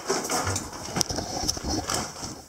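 Close handling noise of a handheld camera being turned around: irregular rustling and scraping against the microphone, with scattered knocks and one sharp click about a second in.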